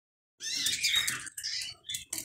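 Small caged finches chirping in a few short bursts of quick, pitch-bending calls, starting about half a second in; the cage holds a male European goldfinch and a canary.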